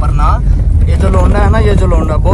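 Steady low road and engine rumble inside a Toyota Yaris cabin driving on a gravel road, with a person talking over it.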